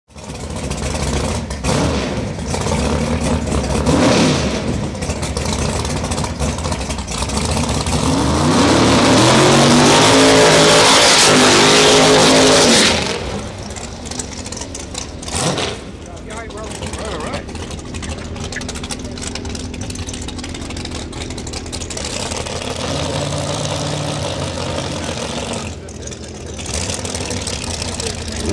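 Drag-race car engine revving hard through a burnout, climbing in pitch and loudest for about four seconds midway. Afterwards it runs more quietly, with people talking.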